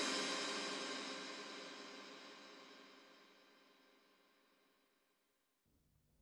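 Electronic music ending on a held synthesizer chord that dies away smoothly over about three and a half seconds, leaving silence.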